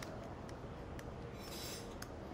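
Faint scraping of a vegetable peeler shaving a block of Parmesan, with a few light ticks and a brief scratchy stroke near the end.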